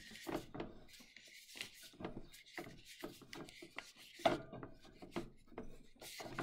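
A 1 lb propane cylinder being twisted by hand against the Buddy heater's fitting, rubbing and scraping with irregular small clicks and one louder knock a little after four seconds, as the cylinder fails to catch its thread.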